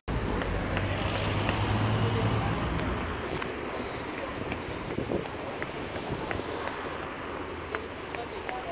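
City street noise: a steady rush of wind on the microphone over traffic, with a low rumble in the first couple of seconds and faint scattered ticks.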